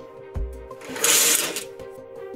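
Background music of sustained low held tones, with a short low thump just after the start and a brief burst of hiss about a second in.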